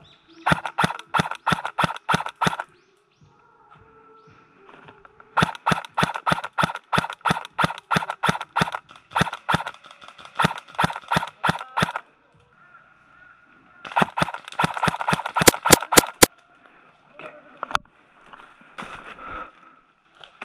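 Airsoft gun firing in three long strings of sharp, evenly spaced shots, about five a second, with short pauses between strings. The last string, near the end, holds the loudest few shots.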